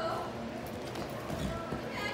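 Hoofbeats of a horse moving close by on soft dirt arena footing: a few dull thuds, the heaviest about one and a half seconds in.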